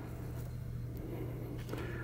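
Quiet background with a steady low hum and no distinct handling sounds.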